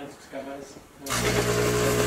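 A terrarium humidifier switching on about a second in: a steady hiss with a low mechanical hum underneath.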